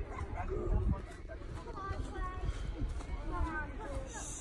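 Indistinct voices of children some distance off, none close to the microphone, over a low rumble of wind on the microphone.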